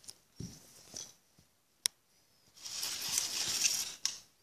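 Handling noise from the LEGO set and the camera: a few small clicks, a single sharp click just under two seconds in, then about a second and a half of loud rustling and scraping near the end.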